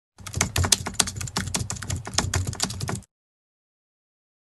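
Computer keyboard typing, a rapid run of key clicks lasting about three seconds that cuts off suddenly into silence.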